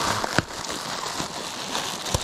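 Plastic bag rustling and crinkling as gloved hands handle it, with a sharp click about half a second in.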